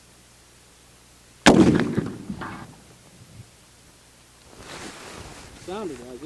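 A single shot from a Springfield Trapdoor Model 1884 rifle in .45-70, about a second and a half in, its report echoing and trailing off over about a second.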